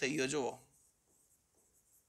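A man's voice speaks briefly, then near silence.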